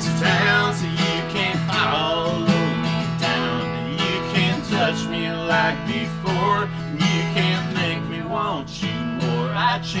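Acoustic guitar strummed in a steady country rhythm, with a higher melody line above it that slides up and down between notes, in an instrumental break of the song.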